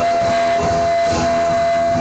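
A single steady high tone, held dead level for about two seconds and stopping near the end, over acoustic guitar accompaniment in a hall: a PA microphone feedback howl from the singer's handheld mic.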